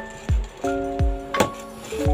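Background music with a deep drum beat about once a second under held synth chords.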